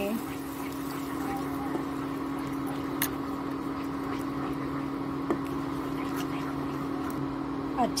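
Wooden spatula stirring a wet, bubbling mixture of roasted gram flour (besan) and water in a kadhai, with two light knocks of the spatula against the pan about three and five seconds in. A steady hum runs underneath.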